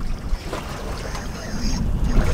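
Wind buffeting the microphone on a boat, over a steady low rumble of water against the hull.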